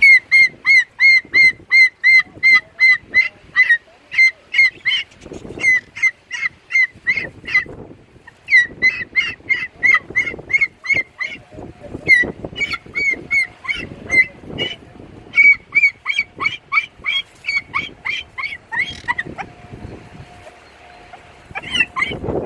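White cockatoo calling in a long run of short, loud squawks, about three a second, broken by a few short pauses; the calls stop a couple of seconds before the end and then start again.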